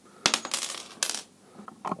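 Two small headless steel nails, one bent at a right angle, dropped onto a table top, clattering in a quick run of light metallic clicks, with a second short clatter about a second in.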